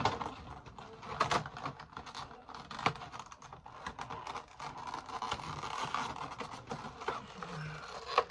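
Crinkling and rustling of the plastic and cardboard packaging of a Funko Pop figure being handled, a dense, irregular run of small clicks and crackles.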